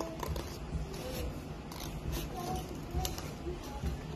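Scissors cutting through a paper plate, several separate snips.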